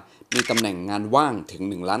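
Speech only: a man narrating in Thai, after a short pause at the start.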